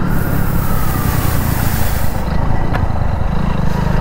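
Hero Splendor motorcycle's single-cylinder four-stroke engine running steadily under way, with wind noise over the microphone for the first two seconds or so.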